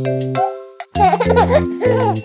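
Children's-song backing music breaks off for a moment, then a small, childlike voice giggles about a second in over the returning music.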